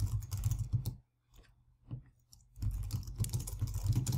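Computer keyboard typing: rapid key clicks with a low thud under each stroke, then a pause of about a second and a half in the middle, then more quick typing.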